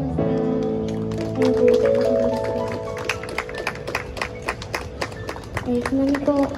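Scattered hand-clapping from a small street audience, starting about a second in, as the held final chord of the song's backing music rings out under it. A woman's voice comes in near the end.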